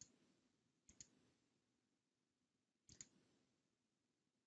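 Faint computer mouse clicks, three of them: one at the start, one about a second in and one near three seconds. Each is a quick double tick, the button pressed and released.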